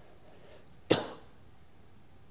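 A man coughs once, a single sharp cough about a second in.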